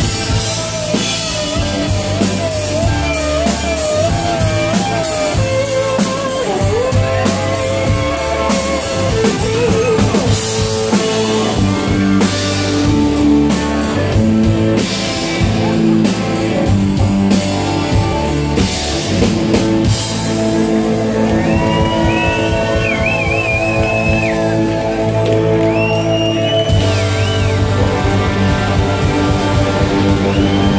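Live rock band playing an instrumental passage: an electric guitar lead with bending, wavering notes over a steady drum kit and backing instruments.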